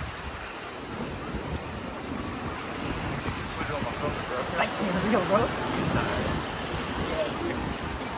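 Wind buffeting the microphone with a steady rumble, over the wash of the surf, with brief talking about halfway through.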